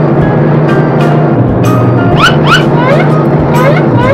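A loud, steady blare from a plastic toy horn, loud enough that the children cover their ears. Short rising and falling whistle-like chirps sound over it in the second half.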